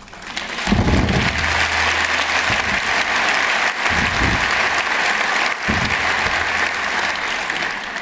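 A large audience applauding: the clapping swells up within the first second and goes on at a steady level.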